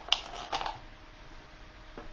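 A few light clicks and scrapes of silicone craft materials being handled, bunched in the first half-second or so, then quiet room tone.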